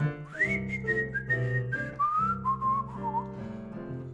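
A man whistling a short descending melodic phrase over held chords on a digital keyboard. The whistle slides up to a high note just after the start, then steps down through several lower notes and ends with a small wavering turn about three seconds in.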